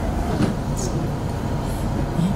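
Steady low background hum and rumble, with no speech.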